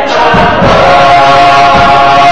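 Gospel choir singing with a drum kit, the voices settling into a long held chord about half a second in, with low drum strokes and cymbals underneath.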